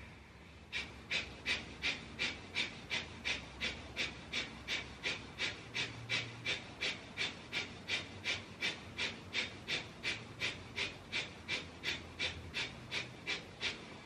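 A person doing a pranayama breathing round: rapid, rhythmic breaths at about three a second, starting about a second in and going on, evenly paced, until just before the end.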